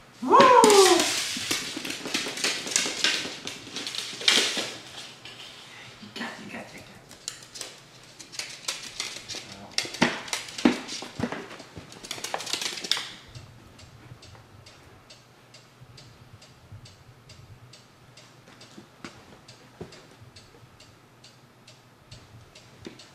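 A pet skunk's claws scrabbling and skittering on a hardwood floor in a burst of clattery scraping, loudest over the first half. It then thins to a faint, evenly spaced clicking of steps.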